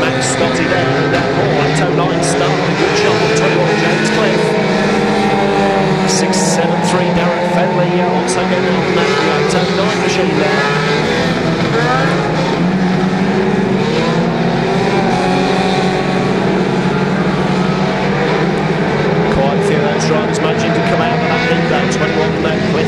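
Several banger racing cars' engines revving together, their pitches rising and falling as the pack jostles round the shale oval, with a few brief sharp clicks among them.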